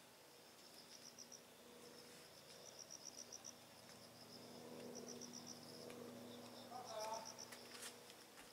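Faint insect chirping: short runs of quick, high, evenly spaced chirps repeating every second or so, over a faint steady hum, with a brief louder sound about seven seconds in.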